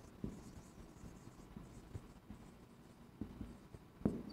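Faint scratching and light taps of a marker writing on a whiteboard.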